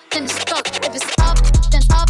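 Hip hop club DJ mix: turntable scratches over a brief break, then a heavy bass line and drum beat drop back in a little over a second in.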